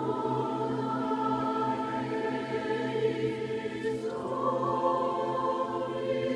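Mixed choir singing sustained chords with piano accompaniment; the harmony shifts to a new chord about four seconds in.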